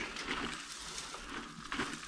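Wood chips from shredded branches, damp and partly rotted, rustling and trickling as they are poured from a plastic bucket into a PVC pipe feeding a small stove, with a light tick near the end.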